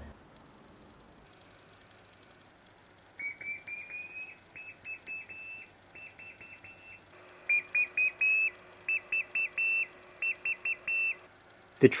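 Morse code keyed on a one-transistor crystal-controlled CW transmitter, heard on a receiver as a high beeping tone in dots and dashes. The early elements slide slightly upward in pitch, a chirp. The keying is faint at first and louder and hissier from about two-thirds of the way in.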